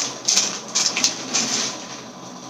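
Clear plastic packaging crinkling in bursts as a dress is pulled out of its bag by hand, four or five short rustles that fade near the end.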